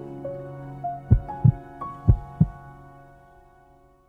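Closing background music: a melody of ringing notes stepping upward, with two pairs of deep thuds around the middle, fading out near the end.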